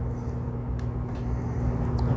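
A steady low background hum, with a few faint light clicks of small metal parts being handled as an E-clip is worked onto a gear shaft with a screwdriver.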